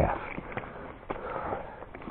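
Footsteps on a gravel trail while walking uphill, heard as a few sharp taps about half a second apart.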